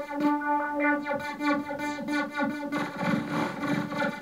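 Nord Lead synthesizer playing a repeating pitched note while a knob is turned, with quick downward pitch sweeps beneath it and a short stretch of noise about three seconds in.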